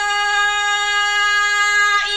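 A man's voice holding one long, steady high note in melodic Qur'an recitation in the mujawwad style: a drawn-out vowel that keeps the same pitch, moving on to the next notes right at the end.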